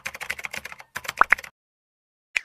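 Rapid computer-keyboard typing clicks, a typing sound effect that runs with on-screen text being typed out. Two short rising chirps come just after a second in, and the typing stops about a second and a half in.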